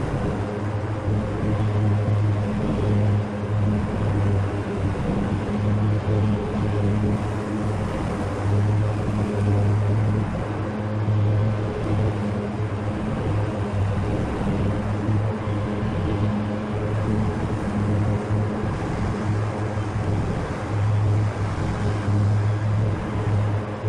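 A Grasshopper zero-turn riding mower's engine running steadily at working speed with the blades engaged, cutting tall grass. A deep, even engine hum sits under the rush of the cutting deck, with only small rises and dips in level.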